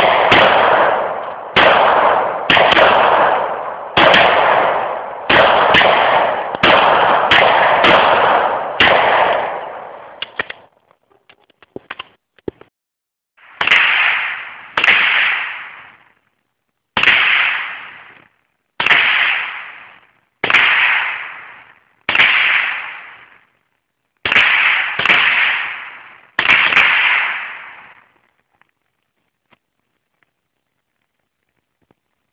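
Gunshots: a string of about nine handgun shots roughly a second apart in the first ten seconds, each trailing off in a long echo, then after a short gap about nine rifle shots spaced one to two seconds apart.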